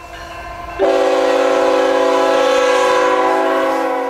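Diesel locomotive air horn sounding one long, loud blast of several notes at once, starting about a second in over a rising train rumble and held steady.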